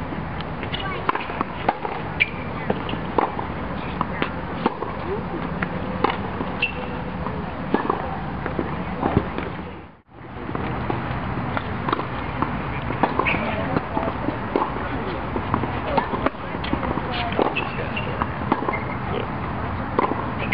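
Tennis balls being struck by rackets and bouncing on a hard court, heard as irregular sharp pops, with indistinct voices in the background. The sound fades out and back in about halfway through.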